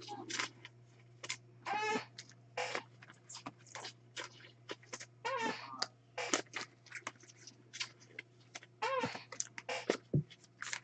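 Card-pack wrappers and packaging being handled: irregular crinkling and rustling, with a few short squeaky sounds.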